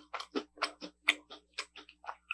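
Close-miked chewing of crunchy chocolate snacks with the mouth closed: a quick run of short, crisp crunches, about five a second, a little softer toward the end.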